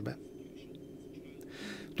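A short pause in speech with a faint steady hum, and a quick breath drawn near the end just before the voice resumes.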